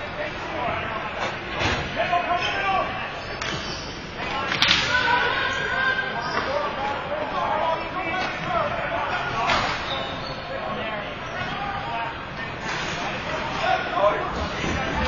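Ball hockey play: several sharp cracks of sticks and the ball striking, the loudest about four and a half seconds in, amid players' shouts and calls.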